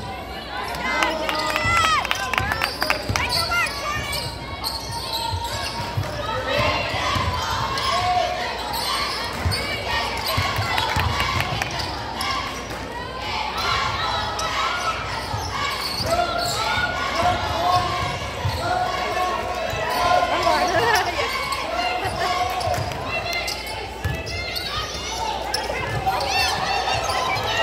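A basketball being dribbled on a hardwood gym floor during play, with sneakers squeaking and players' and spectators' voices calling out, all echoing in the gym.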